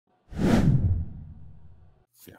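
Whoosh sound effect for an intro logo sting, with a low rumble under the hiss: it starts suddenly about a quarter second in and fades out over the next second and a half.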